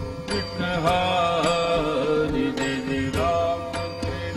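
Devotional kirtan music: voices singing a drawn-out, wavering melody over a steady held note, with sharp percussion strikes roughly every half second.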